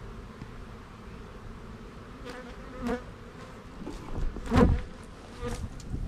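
Honeybees buzzing steadily around an opened beehive, with a louder, closer buzz about four and a half seconds in as a bee comes at the microphone.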